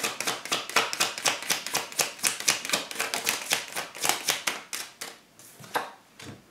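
A deck of tarot cards being shuffled by hand: a fast, even run of card slaps, about five or six a second, that stops about five seconds in, with one more snap of a card just before the end.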